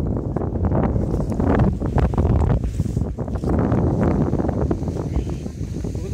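Wind blowing over the camera microphone, a steady low rumble with uneven gusts.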